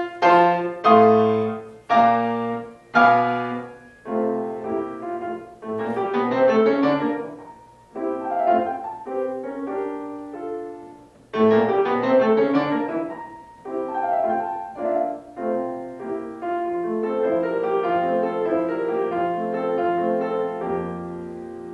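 Solo grand piano playing classical music: loud struck chords about once a second at the opening, then running passages. About halfway through the playing falls away briefly and comes back in suddenly loud, turning softer and more even toward the end.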